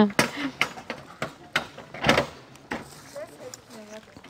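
Voices of other people nearby, with a few sharp knocks and clicks and a short rustling noise about two seconds in.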